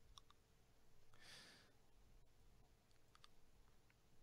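Near silence: room tone with a faint steady hum, a few faint clicks near the start and again about three seconds in, and a soft breath about a second in.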